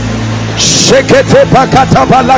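A man praying aloud in tongues: a quick run of short, repeated syllables, about five a second, beginning about halfway through, over a steady low hum.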